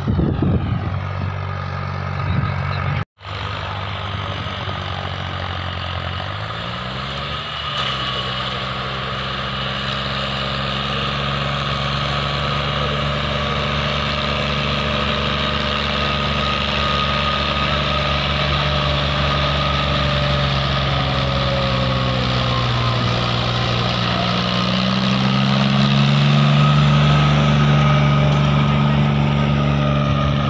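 John Deere 5105 tractor's diesel engine working steadily under load, pulling a disc harrow. The sound cuts out for an instant about three seconds in. The revs climb about seven seconds in, and again in the last few seconds, where the engine grows louder.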